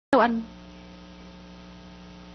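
Steady electrical mains hum made of several fixed tones, opened by a short, loud sound that falls in pitch right at the start.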